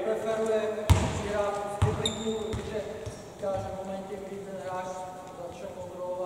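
A basketball bouncing twice on a hardwood gym floor, about a second apart, amid talking.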